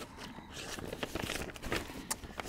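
Vinyl LP being slid and handled in its poly-lined inner sleeve: faint rustling with a few small clicks.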